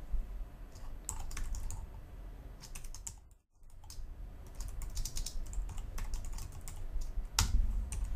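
Typing on a computer keyboard: a quick, uneven run of key clicks, broken by a short silent gap a little past the middle.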